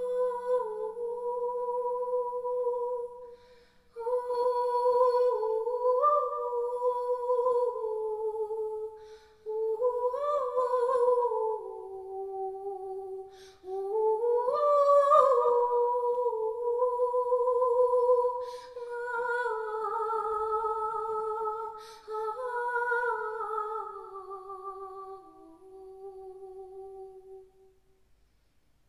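A woman humming a slow, wordless melody in long phrases that glide up and down in pitch, with short breaths between them, fading out near the end.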